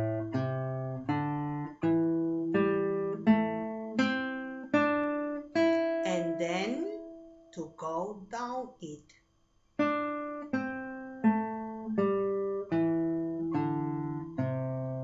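Acoustic guitar playing a slow A-minor piece of plucked chords and single notes, each ringing and fading. It breaks off briefly about nine and a half seconds in, then the chords resume.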